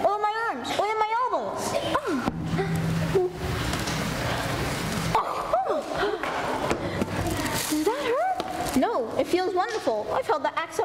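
Children's voices on stage, unclear enough that no words come through, with a few seconds of even noise and a low hum in the middle.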